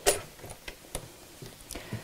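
A few light clicks and ticks from a stopped domestic sewing machine and the quilted fabric being handled at it, with one sharper click right at the start and then scattered soft ticks.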